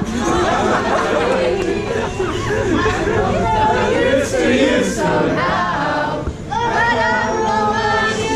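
A crowd of voices singing together without accompaniment, mixed with chatter. After a brief dip about six seconds in, many voices come in together on long held notes.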